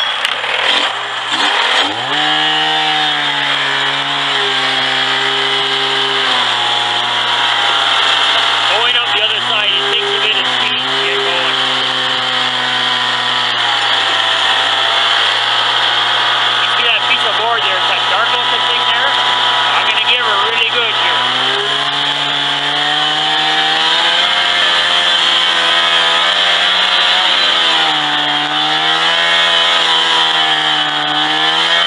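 Polaris snowmobile engine running as the sled rides along a snowy trail. It comes in loud at the start, rises in pitch about two seconds in, and then rises and dips with the throttle, climbing again near the end.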